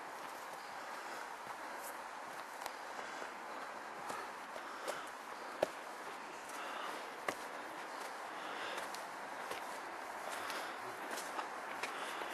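Footsteps on a dirt forest path, soft and irregular, with occasional sharper clicks and ticks.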